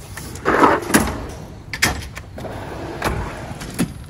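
Drawers of a Snap-on Masters Series steel tool box sliding on their runners: one drawer rolls shut and the next is pulled open, with a sliding rumble about half a second in and several sharp metal clicks and knocks of drawers and tools after it.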